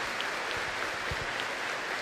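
Audience applauding, a dense steady clapping, with a few low bumps about a second in.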